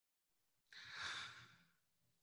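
A person sighing: one faint, breathy exhale lasting about a second, in a pause before answering a question.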